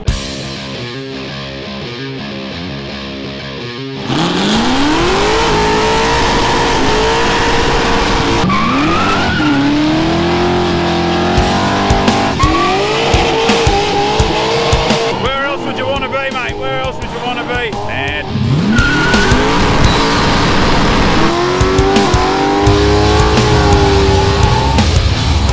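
A car engine revving hard during a burnout, with spinning tyres squealing. From about four seconds in, the revs climb steeply and hold high, then drop and climb again several times.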